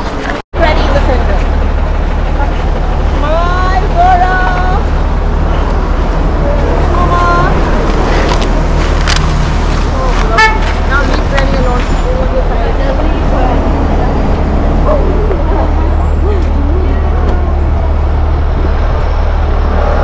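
City street noise: road traffic with a steady low rumble, and people's voices around.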